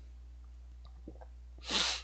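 A man's short, sharp breath through the nose or mouth, a brief hiss about one and a half seconds in, taken just before he speaks again.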